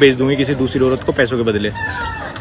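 A man's voice in quick, clipped syllables, with a brief break about a second in, trailing off near the end.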